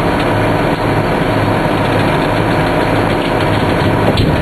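Fire rescue squad truck's engine running steadily with a constant low drone.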